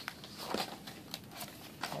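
A hardcover picture book being opened and handled: faint rustling of paper pages and the cover, with a few light clicks and taps.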